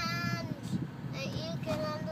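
A young girl singing, holding one long note at the start and another from a little past the middle, over the low steady road rumble of a car's cabin.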